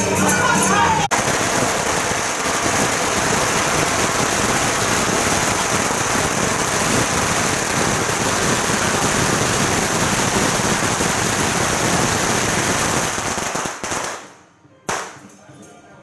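A long string of firecrackers going off in one continuous rapid crackle for about thirteen seconds, starting about a second in and cutting off abruptly near the end, followed by one last single bang.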